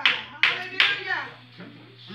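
About three hand claps from the congregation in the first second, mixed with a voice calling out, then dying away.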